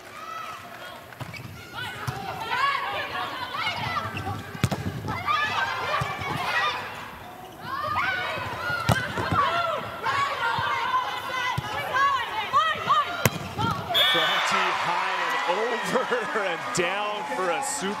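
Indoor volleyball rally: the ball is struck several times in sharp hits, shoes squeak on the court, and players call out over arena crowd noise. The crowd breaks into loud cheering near the end as the point is won.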